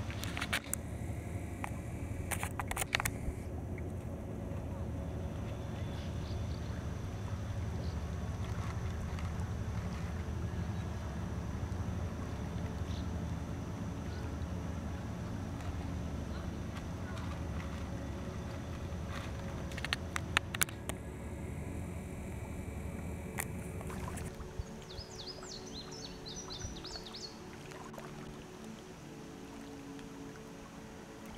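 Towboat's diesel engines running with a low, steady rumble across the water as it pushes barges, fading away about three-quarters of the way through. A few sharp clicks sound near the start and again later, and a short run of high chirps comes near the end.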